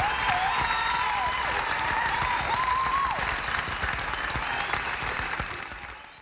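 Concert audience applauding, with a high, wavering pitched call rising and falling over the clapping during the first three seconds; the applause fades out near the end.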